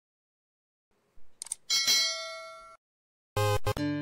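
A single bell-like ding, a chime sound effect, rings out about two seconds in and fades over about a second, between stretches of dead silence. A short faint sound comes just before it.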